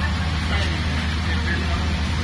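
A steady low machine hum, even in level throughout, with faint voices in the background.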